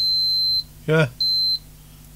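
Multimeter continuity beeper giving a steady high beep that cuts off about half a second in, then a second short beep just after a second in. The beeps mean the probes find an unbroken connection through the HDMI cable's pin.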